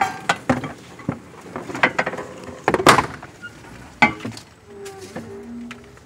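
Irregular sharp clicks and knocks of handling around the open dash and wiring of the UTV, the loudest about three seconds in, with a short low hum near the end.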